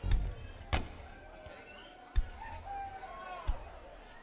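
A few scattered low thumps and one sharp knock from the band's stage between songs, over faint voices.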